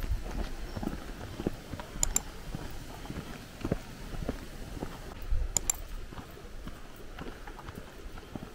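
Footsteps on a concrete footpath at a steady walking pace, as low thuds about one to two a second, with two sharp clicks, about two seconds in and again near the middle.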